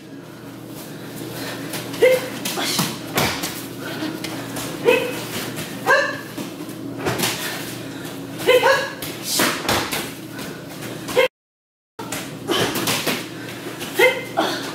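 Bodies being thrown onto tatami mats, with repeated thuds and slaps of breakfalls, mixed with short sharp bark-like shouts several times. The sound cuts out completely for under a second near the end.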